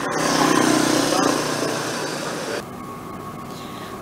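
Street traffic sound, with motorbike and car engines going by, swelling over the first second and then fading; the higher sounds drop out abruptly about two and a half seconds in.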